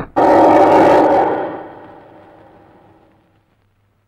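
A film soundtrack sting: one loud metallic crash with ringing tones, struck about a quarter-second in, that fades away over about three seconds.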